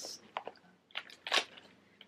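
A few short crunchy clicks and rustles as a zippered hard-shell pencil box is handled and turned over in the hands, the loudest a little past the middle.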